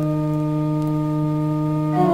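Hildebrandt baroque pipe organ holding a single chord of several clear, steady notes at the start of a piece; right at the end it moves to the next chord.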